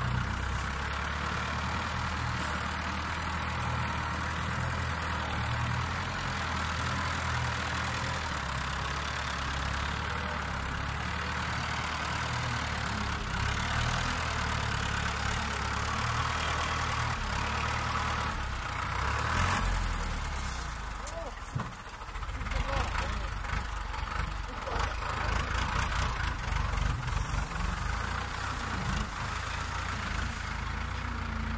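Tractor with a hydraulic sugarcane grab loader, its engine running steadily while the grab works the cane. A little past halfway the engine note changes and dips briefly, then rises and falls unevenly as the tractor drives with a load.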